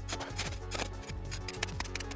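Folding steel shovel blade scraping and jabbing into crusted snow, a run of quick irregular crunches and scratches, over background music with a steady low hum.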